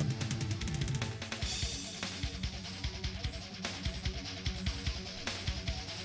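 Background music with a steady drum beat and guitar.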